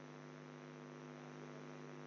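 Faint, steady electrical mains hum in the recording, with no other sound.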